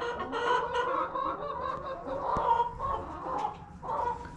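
Several laying hens clucking at once, a continuous overlapping chatter of short calls.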